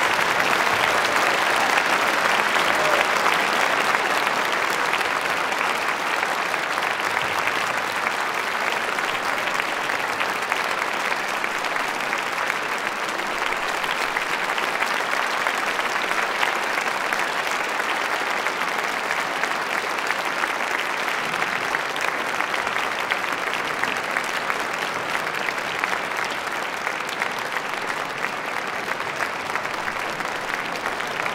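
Large concert-hall audience applauding steadily, a long ovation that gradually eases off in loudness.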